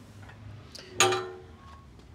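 Thick steel firebox door of a Workhorse Pits 1975 offset smoker being opened: a couple of light metal clicks, then one sharp metallic clank about a second in that rings briefly.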